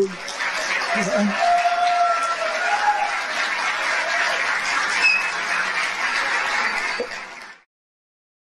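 Audience applauding in a hall, with a few voices cheering early on. The applause cuts off abruptly near the end.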